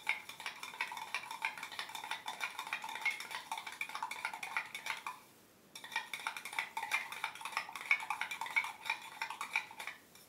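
A metal spoon stirring inside a stainless steel tumbler: fast, irregular clinking against the sides with a bright ringing tone. It pauses for about half a second around the middle.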